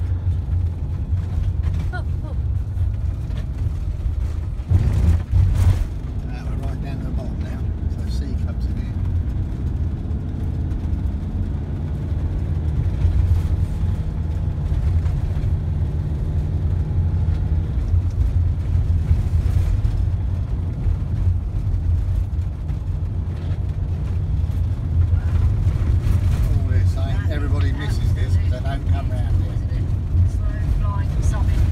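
Steady low rumble of a vehicle's engine and tyres heard from inside the cab while driving a rough single-track road, with a thump about five seconds in.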